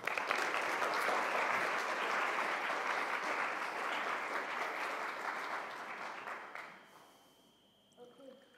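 Audience applauding, starting at once and fading away about seven seconds in.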